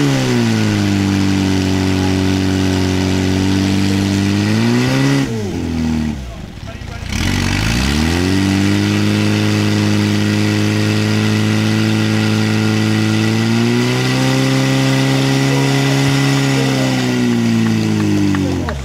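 Portable fire pump engine running at high revs, driving water through the attack hoses. About five seconds in its revs rise, then dip sharply and climb back; they step up a little later and start to fall near the end.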